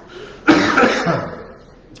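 A man coughing into his fist: one loud cough about half a second in, fading over about a second.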